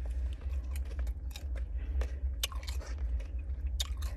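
A person chewing and biting food close to the microphone, with scattered crunchy clicks, over a steady low hum.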